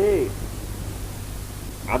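A man speaking in a Telugu religious discourse ends a phrase and pauses. Through the pause a steady low hum and hiss from the recording carry on, and the voice starts again near the end.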